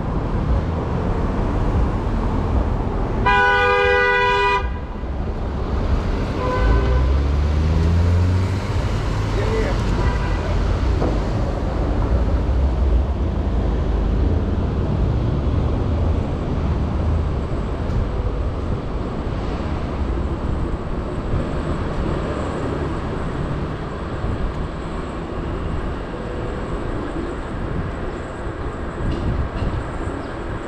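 A vehicle horn honks once, a single held blast of about a second and a half, a few seconds in, over steady city street noise. Just after it, an engine rumbles low and rises in pitch as a vehicle pulls away.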